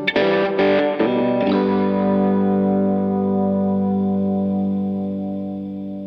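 Background music: a distorted electric guitar strikes a few chords, then lets one chord ring and slowly fade.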